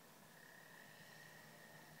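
Near silence: faint outdoor ambience with a faint steady high-pitched tone.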